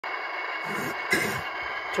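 HO-scale Bowser Alco RS-3 model locomotive's Tsunami2 sound decoder playing a steady diesel idle through the model's small speaker, with a brief louder noise about halfway through.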